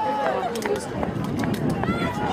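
Spectators' voices talking and calling out near the microphone, overlapping, over steady outdoor background noise, with a few faint clicks.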